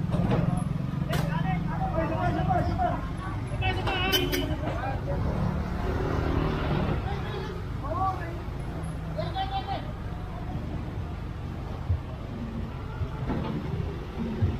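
A vehicle engine running steadily in street traffic, with people talking over it; the engine hum fades in the second half. A few sharp clicks sound near the start.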